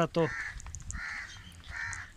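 Crows cawing in the background, three hoarse caws spaced about half a second to a second apart.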